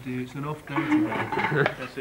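Indistinct conversation between people close by, with a few light clinks and taps of objects on a table.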